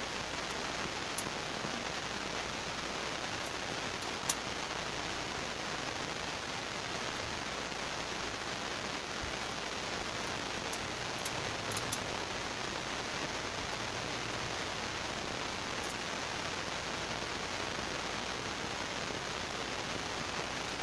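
A steady, even hiss, with a few faint sharp clicks of kitchen scissors snipping fish.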